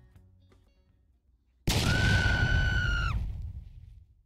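Background music fades out, then about a second and a half in, a sudden loud comic sound effect: a crash-like burst with a held high ringing tone that lasts about a second and a half and then cuts off.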